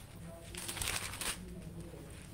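Thin Bible pages being turned at a lectern: a soft papery rustle starting about half a second in and lasting under a second.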